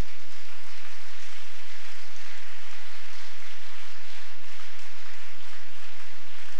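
Church congregation clapping their hands together in steady, sustained applause as a clap offering, with a faint low steady hum underneath.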